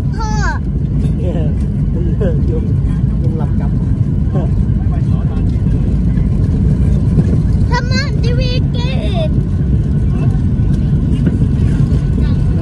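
Steady low rumble of an airliner's engines and airflow heard inside the passenger cabin as the plane moves along the ground.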